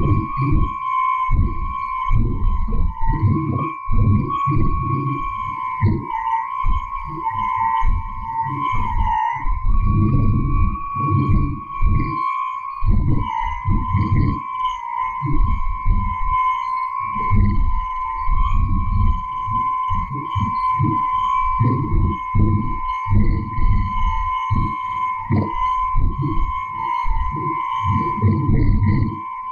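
Filtered and frequency-shifted interference from a household appliance's DC motor, picked up on a shortwave radio. It plays as a steady whistle near 1 kHz with a fainter higher tone, over choppy low bursts that come and go in a speech-like rhythm. The recordist takes these bursts for human speech drawn out of the motor noise.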